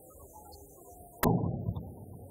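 Quiet background music, then a little over a second in a single sudden loud bang with a low rumble that dies away within about half a second.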